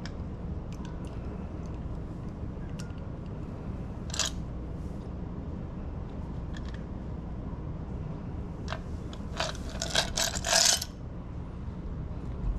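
Glass and metal clinks from a glass mixing glass and cocktail strainer as a creamy cocktail is strained into a coupe: one clink about four seconds in, then a quick run of clinks near the end, over a low steady hum.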